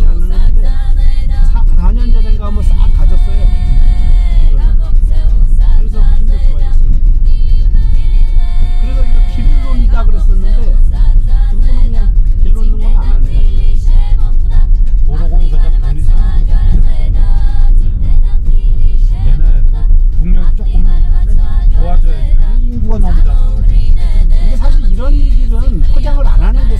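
Steady low rumble of a car driving on a gravel road, heard from inside the cabin, with music and a singing voice playing over it.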